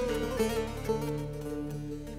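Instrumental passage of a Turkish folk song (türkü): quick plucked-string notes over a sustained low accompaniment, between the singer's phrases.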